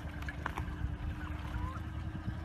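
Amphicat six-wheeled amphibious ATV's small engine running with a low, steady note as the vehicle drives off a ramp and floats into lake water.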